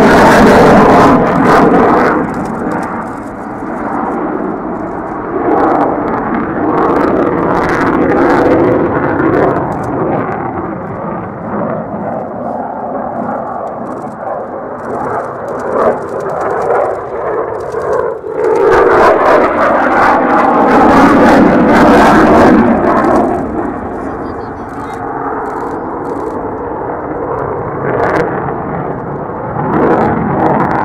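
JASDF F-15J fighter jet's twin turbofan engines roaring in a low flyby and turn, with the afterburners lit at the start. The noise swells and fades as the jet passes, loudest in the first two seconds and again around twenty seconds in, with a crackling edge.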